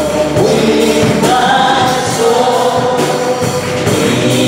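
Live gospel worship singing: a man's voice leads into a microphone while a choir of voices sings along, held notes over band accompaniment.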